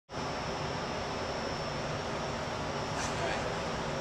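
Steady background room noise: an even hiss with a faint high-pitched whine running through it.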